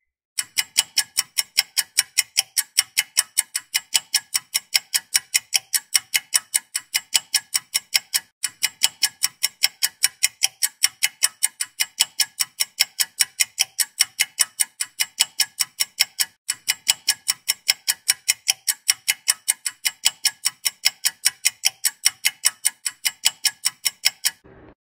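Clock-ticking sound effect: a steady run of about four sharp ticks a second, broken twice for an instant where it repeats. It counts down a pause left for answering a quiz question.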